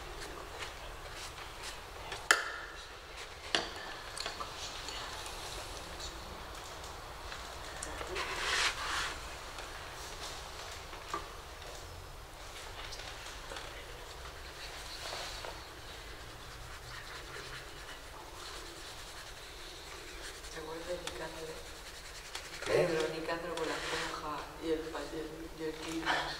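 Quiet room sound with a few small clicks and knocks, a brief rustle about eight seconds in, and a voice speaking near the end.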